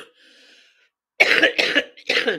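A person coughing in a fit: the tail of one cough at the start, a faint breath in, then two coughs in quick succession a little over a second in.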